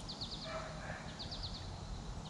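A songbird repeating a short phrase of three or four quick high notes, about once a second, over a steady low outdoor rumble.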